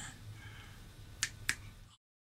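Two sharp clicks about a quarter of a second apart over faint room tone, then the sound cuts off.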